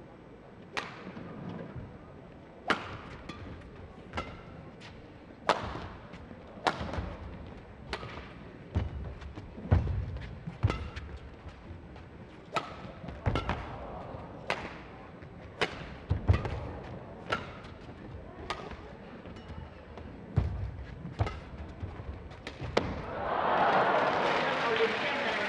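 A long badminton rally: about twenty sharp racket-on-shuttlecock hits, roughly one a second, with low thuds of footwork on the court between them. Near the end the rally finishes and the crowd breaks into loud cheering and applause.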